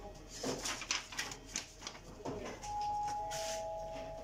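Paper rustling with light clicks as a sheet is handled and fed into an Epson LQ-310 dot-matrix printer. About two and a half seconds in, a two-note electronic chime sounds, a higher tone and then a lower one, both held and ringing on together.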